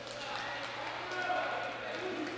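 A basketball bouncing on a hardwood gym floor after a free-throw attempt, with a few sharp knocks in the first half second, under the murmur and calls of spectators that echo around the gymnasium.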